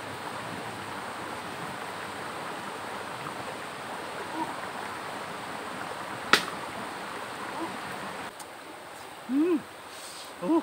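Steady rush of running river water with a campfire beside it, broken about six seconds in by a single sharp crack of wood as the fire is poked with a stick. Near the end the water sound drops away and a man gives a short 'oh'-like exclamation.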